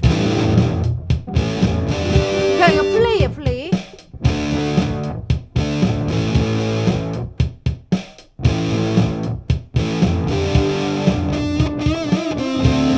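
Overdriven electric guitar played through a Nux MG-300 multi-effects processor: lead phrases with string bends, breaking off briefly twice.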